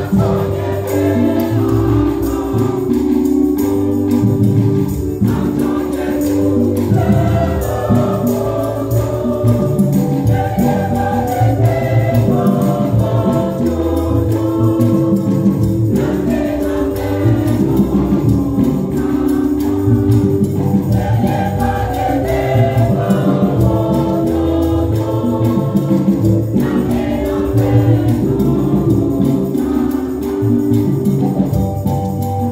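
Women's church choir singing a gospel hymn together, accompanied by an electronic keyboard with a steady bass line.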